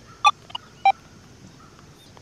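Three short electronic beeps of differing pitch from an XP Deus 2 metal detector within the first second, while its keypad is pressed to step through frequency channels.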